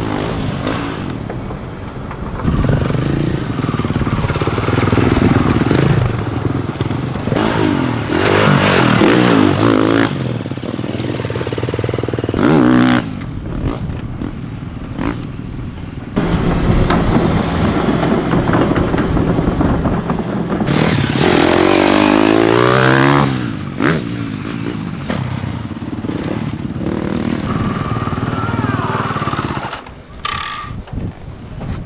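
Dirt bike engines revving hard as riders take a motocross track section, the pitch climbing and dropping with throttle and gear changes, with loud surges about a third of the way in and again about three quarters through.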